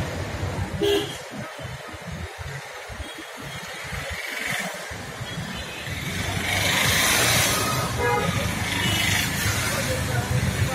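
Street traffic: vehicle engines running, with a short car-horn toot about a second in and a louder swell of passing-vehicle noise around the seventh second.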